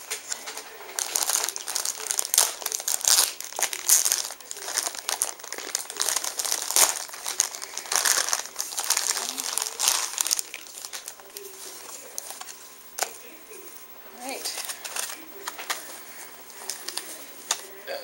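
Thin plastic bag crinkling and rustling as a box is worked out of it by hand. The crackling is dense for the first ten seconds or so, then sparser.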